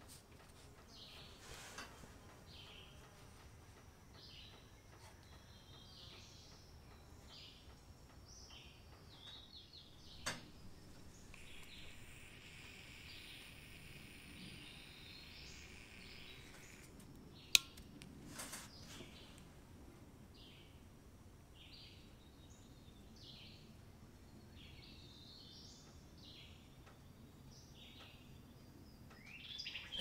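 Faint bird chirping, with a soft hiss for several seconds in the middle, a knock about ten seconds in and a sharp click a little past halfway.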